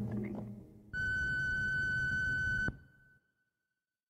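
A steady, high electronic beep tone about two seconds long, over a low rumbling hiss. It starts about a second in and cuts off suddenly.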